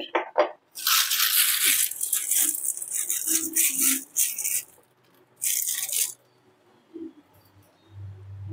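Plastic piping bag crinkling and rustling as it is handled and filled with ganache, in two stretches: a long one of about four seconds, then a short one about five and a half seconds in.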